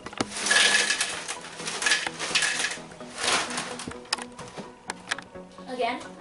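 Barbara's Snackimals chocolate crisp cereal pouring from its plastic liner bag into a bowl in three rustling bursts, the bag crinkling, followed by a few light clicks.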